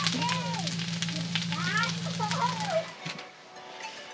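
Food sizzling and crackling in a pan, over a steady low hum, with voices over it. The sizzle and hum stop suddenly about three seconds in.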